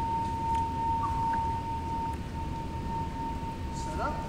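A steady high-pitched tone held at one pitch, over a continuous low rumble of background noise.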